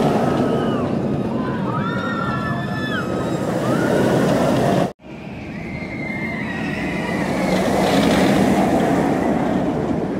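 Dominator, a floorless steel roller coaster, with a train running through its vertical loop: a loud rumble of the train on the track, with high gliding cries over it that are typical of riders screaming. The sound cuts out abruptly about halfway through, then a second pass builds up and is loudest about two seconds before the end.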